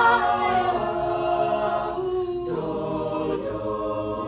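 Mixed a cappella group singing in harmony: a woman's lead voice over held chords from the other singers, with no instruments. Near the middle the sound thins briefly before a new chord comes in.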